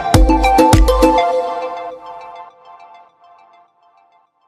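Electronic background music with a steady beat and deep bass; the beat and bass drop out about a second in, and the remaining melody fades out over the next two seconds.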